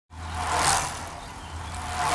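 Two whooshing rushes of noise about a second and a half apart, each swelling and fading over a low steady hum: a sound effect for the animated logo.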